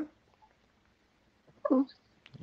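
About a second and a half of quiet, then a brief 'mm' from a voice near the end.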